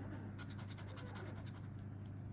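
Scratch-off lottery ticket being scraped with a handheld scratcher, a quick run of short scratching strokes about half a second in, then lighter, over a low steady hum.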